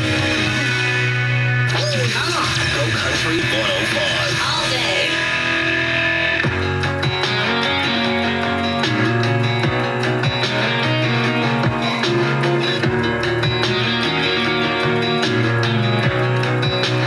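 Country music playing on an FM radio broadcast, with guitar. A voice is heard over the music from about two to six seconds in.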